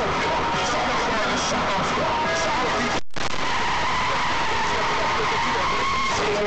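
Loud, steady car road and tyre noise heard from inside the cabin as the car veers off the road, with a voice talking underneath. The sound cuts out completely for a split second about three seconds in.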